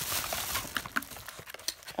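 Packaging and a nylon pouch rustling as wax packs are handled, then a few light clicks and taps as items are set down.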